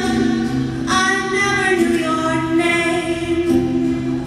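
A woman singing a slow song into a microphone, holding long notes, over her own acoustic guitar.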